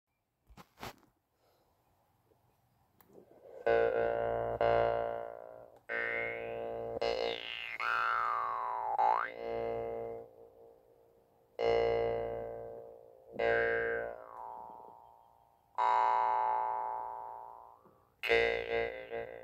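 Metal jaw harp being plucked, starting about four seconds in: a droning note held on one pitch, with the overtones sweeping up and down as the player's mouth changes shape. It is plucked about seven times, and each note rings and fades before the next.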